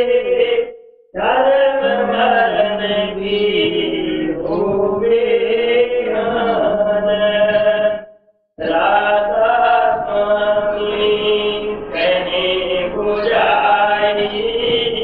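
Devotional chant sung in a slow melodic line over a steady drone. It breaks off twice for about half a second, about a second in and about eight seconds in.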